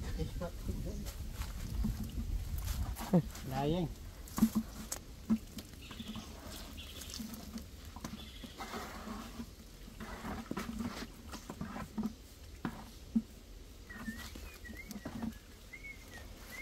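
Scattered scrapes and taps of a trowel and wooden float working fresh cement render on a masonry tomb. A short pitched call bends up and down about three seconds in.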